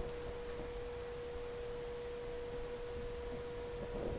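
A faint, steady, single-pitched electronic tone, mid-pitched with a weaker higher overtone, held unchanged over quiet room noise.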